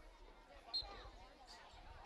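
Faint chatter of spectators' voices, with one brief, sharp high-pitched blip a little under a second in.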